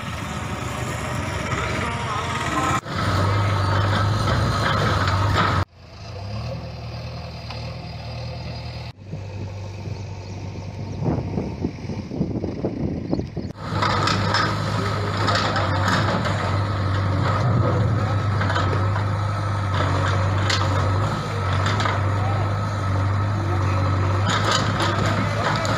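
Field sound from a series of cut-together shots, with a diesel engine running steadily, typical of a JCB backhoe loader at work, heard through the last ten seconds. The sound changes abruptly at each cut.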